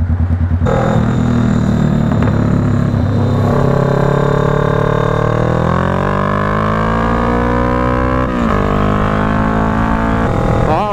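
Kawasaki Vulcan S 650's parallel-twin engine pulling away from a stop, its revs climbing steadily, with a brief dip at a gear change about eight seconds in before it settles.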